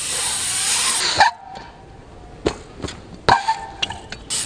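BMX bike riding in a concrete skatepark bowl: a loud rush of noise for about the first second, then quieter rolling noise with a few sharp clicks and knocks.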